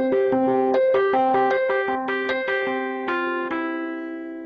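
Korg SV-1 stage piano's 'Tiny EP/Amp' electric piano sound playing a pattern of repeated notes, with a chord change about three seconds in that is held and fades near the end. Its mid-range EQ is boosted and the mid frequency is swept upward to find the bell character of the tone.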